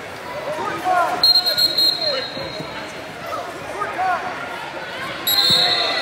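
Wrestling shoes squeaking repeatedly on the mat as two wrestlers scramble, over background voices in a large hall. Two short, shrill high tones cut in, about a second in and again near the end.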